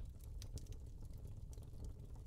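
Faint low room hum with light, scattered clicks.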